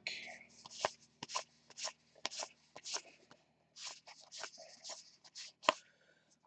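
Stack of 2019 Topps Allen & Ginter baseball cards being flipped through by hand, cardboard sliding against cardboard in a dozen or so soft, short swishes, about two a second.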